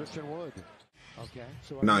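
NBA broadcast sound: a basketball bouncing on the court under a commentator's voice, with a brief drop to silence at an edit just under a second in.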